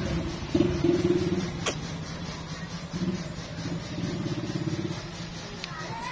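An engine running at low speed, louder and quieter by turns, with one sharp click about a second and a half in.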